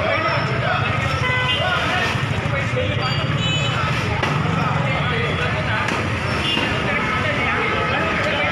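Indistinct voices of bystanders over steady street and traffic noise.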